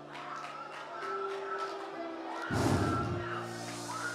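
Soft worship music of held, sustained chords, with the voices of a congregation praying and worshipping over it. About two and a half seconds in there is a brief loud burst of noise lasting under a second.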